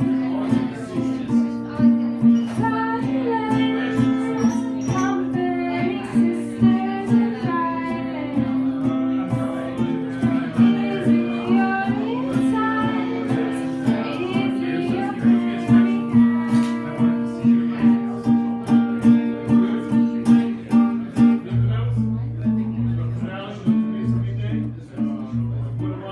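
Acoustic guitar played live in a steady rhythmic pattern, with a voice singing a wavering melody over it. Deeper bass notes come in near the end.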